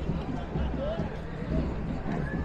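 Outdoor street ambience: a low, uneven wind rumble on the clip-on microphone, with faint distant voices.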